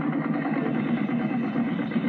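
Marching band playing a dense, rumbling passage without clear held notes, just after a sustained chord breaks off. The sound is muffled and dull, with no high end.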